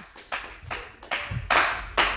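Sparse hand clapping, about five separate claps over two seconds, applauding a song that has just finished.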